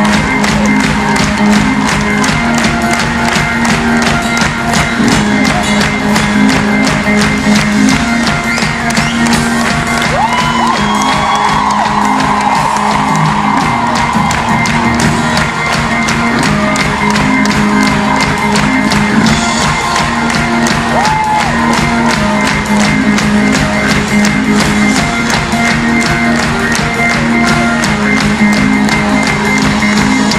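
Rock band playing an instrumental passage live in an arena: a steady drum-kit beat under held keyboard and guitar chords, with the crowd cheering and whooping.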